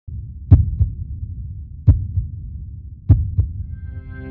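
Heartbeat-like intro sound effect: three slow double thumps, lub-dub, a little over a second apart, over a low rumbling drone. A held musical chord fades in near the end.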